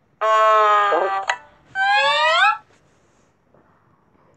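A voice making two drawn-out sounds. The first is held on one pitch for about a second; the second slides upward in pitch.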